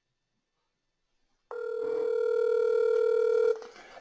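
Telephone ringback tone on an outgoing call: one steady two-second ring starts about a second and a half in and then cuts off, the line still ringing at the other end before the call is answered.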